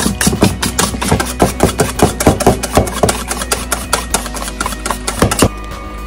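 Wire whisk beating whipped cream by hand in a stainless steel bowl, about eight quick strokes a second, the wires clicking against the metal; the whisking stops about five and a half seconds in. The cream is being whipped stiffer for piping.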